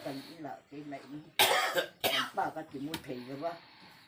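An elderly woman speaking in Mizo, interrupted by a loud cough about a second and a half in.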